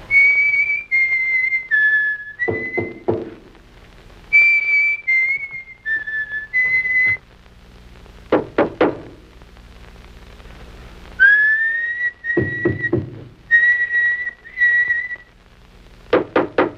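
A man whistling a short phrase of about four notes, each phrase followed by three quick knocks. The pattern repeats about four times.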